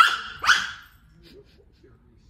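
Toy poodle barking twice, two sharp high-pitched barks about half a second apart, right at the start.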